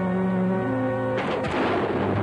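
Dramatic orchestral film score with held string and brass notes, broken about a second in by a sudden loud crash that dies away over about half a second before the music carries on.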